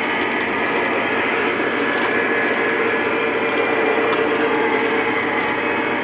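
Lionel O-gauge model train running on three-rail track, with a steady, even mechanical running sound of its motors and rolling wheels.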